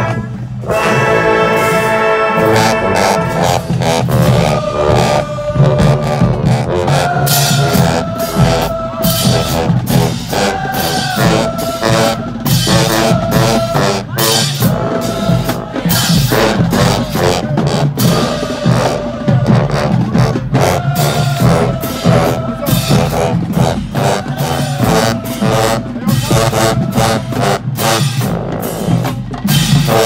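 High school marching band playing: trumpets, trombones, mellophones, saxophones and sousaphones sounding sustained and shifting brass lines over steady drum hits. It dips briefly right at the start, then comes back in at full volume.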